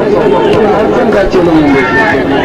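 Speech: a man talking into a microphone, with crowd chatter.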